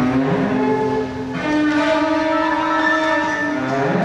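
Contemporary chamber music for cello and electronic sound: held, dissonant notes that slide in pitch, over a thick sustained chord. A rushing hiss joins in from about a second and a half in until near the end.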